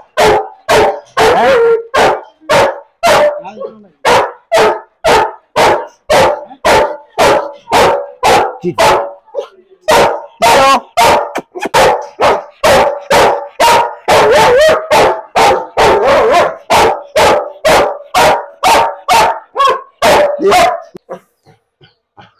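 Rottweiler barking loud and fast behind an iron-barred gate, about two or three barks a second without let-up, at the men standing at its gate. The barking stops about a second before the end.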